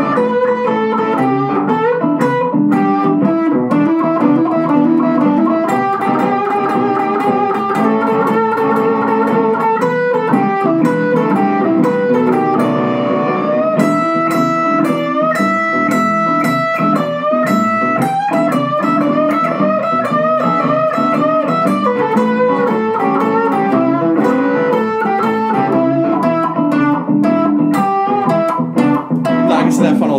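Electric guitar improvising a blues solo over a backing track, its phrasing built from combinations of quarter notes, swing eighth notes and triplets.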